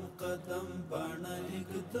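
Faint vocal chanting in the background, pitched notes held and gliding slowly, without speech over it.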